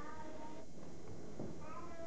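Two short, high-pitched vocal calls with gliding pitch, one at the start and one near the end, with a soft knock between them.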